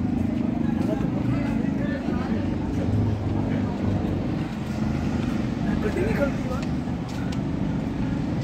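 Steady low engine rumble of street traffic, with faint background voices.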